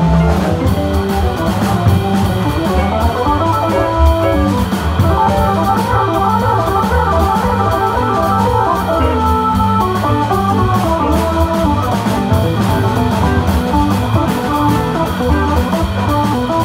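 Live jazz organ trio playing a swing tune: a Hammond-style organ, an archtop electric guitar and a drum kit with cymbals, the organ also carrying the low bass notes.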